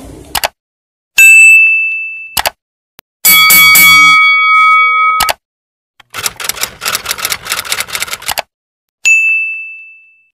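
Outro sound effects: a bell-like ding that rings out, then a longer chime of several tones. Next comes a quick run of phone-keyboard typing clicks, and a second ding near the end.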